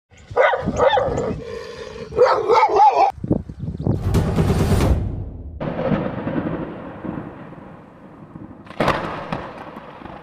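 A dog barking several times in quick succession. It stops abruptly, and a title-sequence sound effect follows: a loud whoosh about four seconds in, a long fading swell, and another sharp hit near the end.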